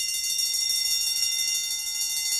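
Electric bell ringing steadily with a fast, even rattle.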